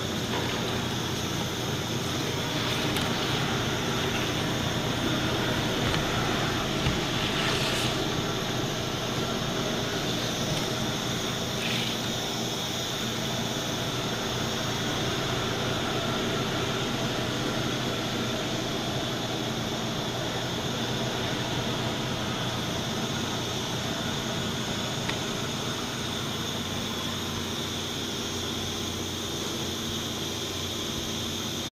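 Shrink-wrap line running: an automatic L-bar sealer and the heat shrink tunnel it feeds make a steady rushing noise with a constant high whine and a low hum. A few faint clicks sound in the first twelve seconds or so.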